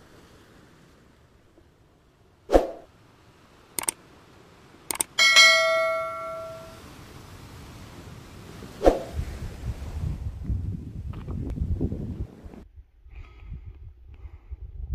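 Sharp knocks of stones and metal being handled at a stone fire pit by a metal kettle: three short clacks, then a metallic clang about five seconds in that rings for over a second. Another knock near nine seconds, followed by a low, uneven rumble.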